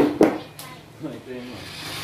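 Two quick sharp knocks a fifth of a second apart, plastic parts of a Hot Wheels toy garage being handled, followed a second later by a brief faint bit of a voice.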